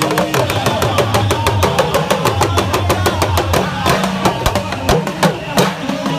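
Hand drums beaten in a fast, dense rhythm, several strokes a second, with a man's voice over a loudspeaker above them.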